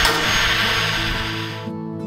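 Angle grinder cutting off the excess edge of a white metal roofing panel, a loud hiss that cuts off suddenly near the end. Acoustic guitar music plays underneath and carries on after the grinder stops.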